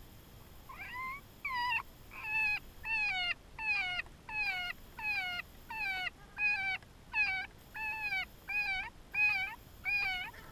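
FoxPro Shockwave electronic predator caller playing a recorded animal cry over and over. It is high and falls in pitch, repeats about twice a second in an even, machine-like rhythm, and starts about a second in.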